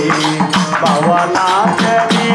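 A man singing a devotional song in long, gliding held notes into a microphone, accompanied by a hand drum and small hand cymbals keeping a quick steady beat.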